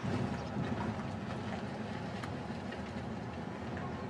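Steady engine and road rumble of a car driving, heard from inside the cabin.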